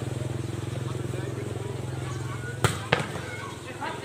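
Two sharp smacks of a volleyball being struck by hand, about a third of a second apart, near the end. They come over a steady low hum and background voices.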